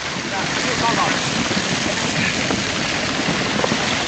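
Hailstones pelting down in a dense, steady clatter of countless small impacts.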